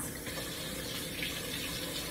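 Liquid coffee being poured into a mason jar of ice: a steady pouring, filling sound that begins to fade near the end.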